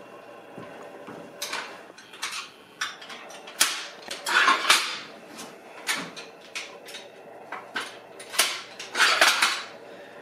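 Metal clicks and clanks of block-style adjustable dumbbells being handled as their weight selector pins are pulled and reset: a string of sharp knocks, busiest about four seconds in and again near the end.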